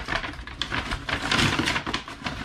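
Paper gift bag and tissue paper rustling and crinkling as hands dig into the bag and pull a boxed gift out, a dense run of irregular crackles.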